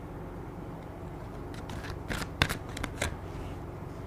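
Tarot cards being shuffled: a quick cluster of sharp clicks and snaps midway through, lasting about a second and a half.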